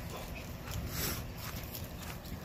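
Footsteps through dry grass with a steady low rumble of wind on the microphone as the camera is carried along.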